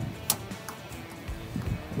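Background music, with one sharp click about a third of a second in: the oil pressure sensor breaking loose from the engine block under a ratchet on a 27 mm socket, a "little pop".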